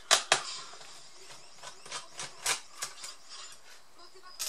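Small metal hand tools clicking and tapping on the plastic bottom case of a Lenovo G570 laptop as screws are undone and lifted out: two loud sharp clicks right at the start, then scattered lighter ticks.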